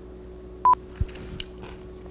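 A single short electronic beep at one steady pitch, about two-thirds of a second in, followed by a soft low thump, over a faint steady hum.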